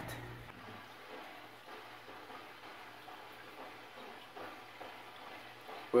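Aquarium filter running: a faint, steady low hum with a soft wash of moving water.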